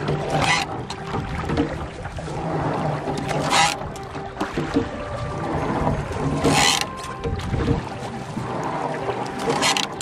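Oars working a wooden sculling boat: a steady rush of water with a sharp splash or knock about every three seconds, one for each stroke.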